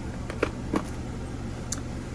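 A few light clicks and taps of beads and small metal jewelry parts being moved by hand across a work mat, over a steady low hum.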